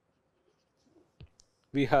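Faint taps and scratches of a stylus on a pen tablet as a word is handwritten, with one sharper click about a second in; a man's voice starts near the end.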